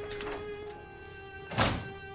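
A wooden door thudding shut once, about one and a half seconds in, over soft sustained background music.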